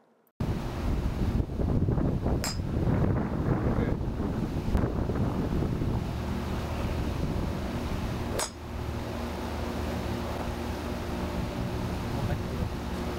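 Wind buffeting the camera's microphone outdoors: a steady, rough rumble that starts suddenly just after the beginning. Two brief sharp clicks come through, one about two and a half seconds in and one about eight and a half seconds in.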